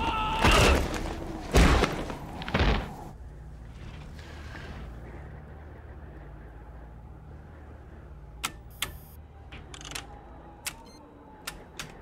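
Film fight sound effects: three heavy hits in the first three seconds. Then a low, steady hum of a spaceship interior, with a run of sharp, separate clicks over the last few seconds.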